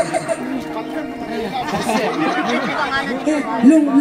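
Overlapping chatter of several people talking and calling out at once, with no clear drumbeat.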